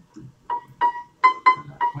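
A 1940s upright piano sounding one high note five times in quick succession, each stroke ringing briefly. The key is being tried out because its return springs are too weak to pull the parts back.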